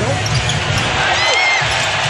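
Steady crowd noise in a basketball arena during live play, with a few short high squeaks about a second in, typical of sneakers on the hardwood court.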